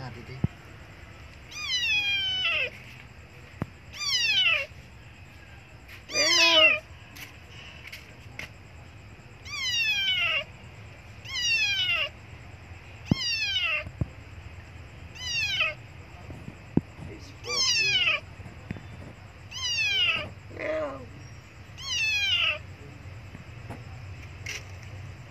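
Young abandoned tabby kitten meowing loudly and repeatedly, about ten high cries a couple of seconds apart, each falling in pitch: a hunger cry, which the uploader takes for the kitten wanting milk.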